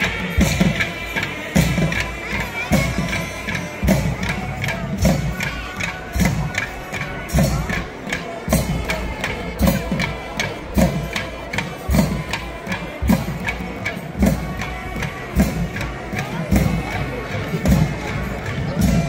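Temple procession music: loud, busy drumming with many sharp strokes and a low thud about every half second, under a held high melody line, with a crowd's voices and cheering behind it.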